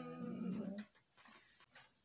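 A sustained voice, singing or moaning on held notes, that stops just under a second in. It is followed by a quiet room with a few faint soft rustles.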